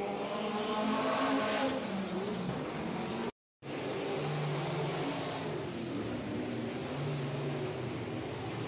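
Dirt-track race car engines running and revving, their pitch rising over the first two seconds. The sound cuts out completely for a moment about three seconds in, then a steadier drone of engines circling the oval follows.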